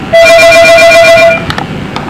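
One electronic telephone ring: a loud, steady tone with a fast flutter in its higher parts. It lasts just over a second, then stops.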